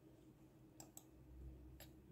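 Near silence: room tone with a faint low hum and two faint short clicks.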